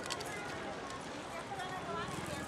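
Busy street market ambience: a crowd's faint, indistinct voices with scattered light clicks and knocks.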